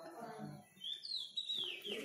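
Faint bird chirps: a short run of quick, falling high notes, starting about a second in.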